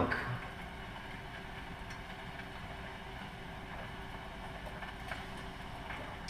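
A steady low hum with faint steady tones, and a few faint clicks.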